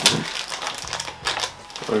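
Plastic candy bag being torn open by hand: the wrapper crinkles and crackles in quick, irregular snaps, with a sharp crack as the pull begins.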